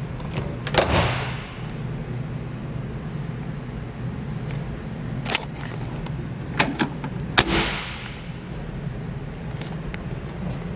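Steady low hum with a handful of sharp knocks, the loudest about a second in and about seven seconds in, each echoing briefly in a large room.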